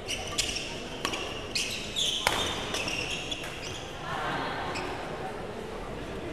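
Badminton rally: rackets hitting the shuttlecock in a quick run of sharp cracks, mixed with shoes squeaking on the court floor, over about the first three seconds.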